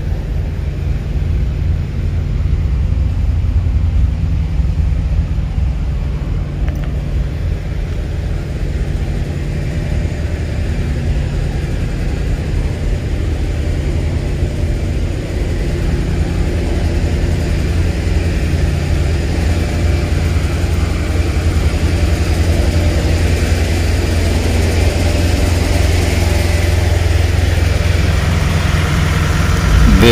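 Semi-truck diesel engine idling steadily, a low rumble that grows louder toward the end.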